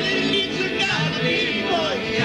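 Vlach polyphonic folk singing by male voices: a steady held drone under a lead voice that slides and ornaments in pitch, with a falling glide near the end.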